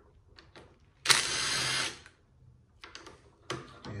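Cordless drill-driver with an 8 mm socket spinning out a valve-body bolt in one short burst of just under a second, followed by a few light clicks of the tool and bolt being handled.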